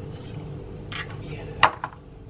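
Kitchen things being handled in a cupboard: a short rustle about halfway through, then a sharp clack near the end, the loudest sound, with a smaller click just after.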